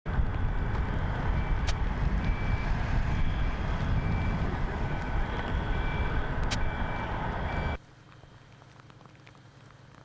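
A vehicle's reversing alarm beeping about once every three quarters of a second over a loud, steady rumble. Both stop abruptly about eight seconds in.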